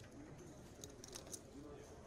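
Quiet room tone with a faint murmur of low voices, and a quick cluster of three or four light clicks about a second in, like poker chips being handled at the table.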